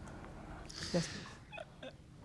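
Quiet room tone with a single short spoken 'yes' about a second in, and a few faint murmurs near the end.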